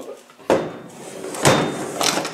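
LT77 gearbox being turned over on a workbench: the casing knocks down about half a second in, scrapes, and knocks again more loudly a second later.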